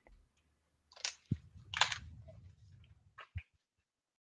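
Faint handling noise picked up by a video-call headset microphone: two short breathy hisses, a soft thump with a low rumble after it, and a couple of quick clicks, after which the audio cuts off.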